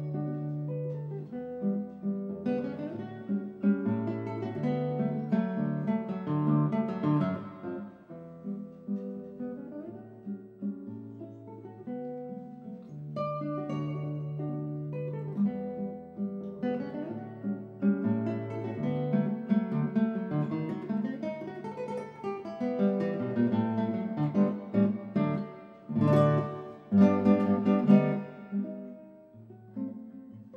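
Classical guitar playing a piece of quick plucked runs over sustained bass notes, with loud, full chords near the end.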